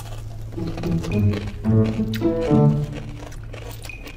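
Background music carried by low, bass-like notes, with faint crunching and chewing from bites of cucumber.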